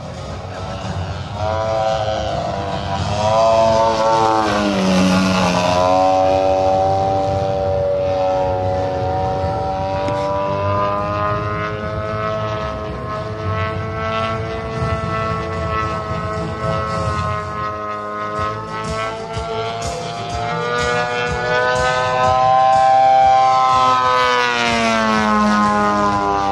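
Radio-controlled aerobatic model airplane flying overhead, its engine note wavering up and down with the throttle through the manoeuvres. The pitch drops sharply as it passes close, about five seconds in and again near the end.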